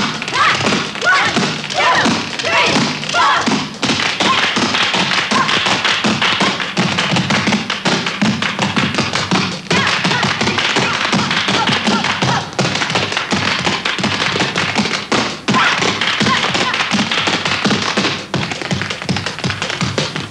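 Group tap dancing on a stage floor: fast runs of shoe taps over a music track.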